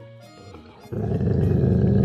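Chocolate Labrador growling low and steadily over a lamb bone, starting about a second in: the dog is guarding its food.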